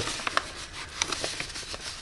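Paper rustling as a paper envelope is handled and paper cutouts are pulled out of it, with a few small clicks.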